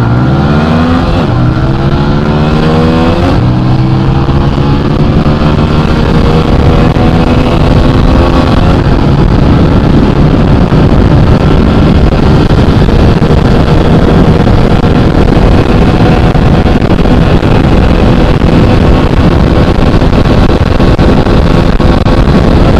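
TVS Apache RTR 200 4V single-cylinder engine accelerating hard under full run-up, its pitch climbing with quick upshifts about one and three seconds in, then a long steady pull. From about nine seconds on, wind rush on the microphone at high speed grows to cover the engine.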